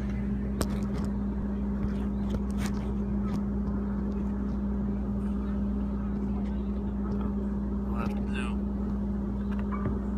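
A steady electrical hum from the band's stage amplification, one low tone held without change, with scattered clicks and knocks from the phone being handled.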